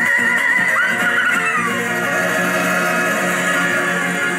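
Argentine folk song played back sped up, so the singing voice comes out unnaturally high, over the band. A long held high note carries through, with a falling vocal swoop about a second in.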